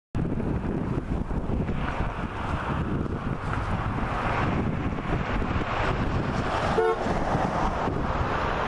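Steady outdoor street noise of road traffic with a rumbling low end, and a short car horn toot near the end.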